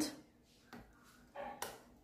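Cut lemon pieces placed into an empty enamel pot, with a faint click and then one sharp knock against the pot about a second and a half in.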